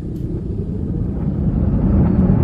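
Low vehicle rumble heard from inside a car, growing gradually louder.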